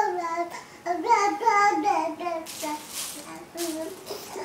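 A baby babbling in long, sing-song vowel sounds that rise and fall in pitch, with a short breathy rush of noise about halfway through and shorter bits of voice after it.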